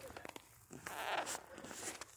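Cartoon soundtrack played at high speed from a TV's speakers and picked up by a phone. It is fairly quiet at first, then a loud, hissy burst fills the second half.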